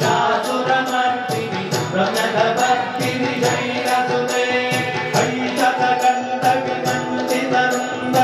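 A devotional Hindu stotram chanted to a melody over music, with a steady beat of high, jingling percussion.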